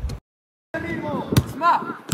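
A football kicked with a single solid thud, amid short shouted calls from players on the pitch. The sound cuts out completely for about half a second near the start.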